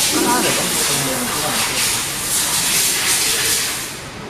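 Loud hiss that swells and fades, with faint voices underneath in the first second or so.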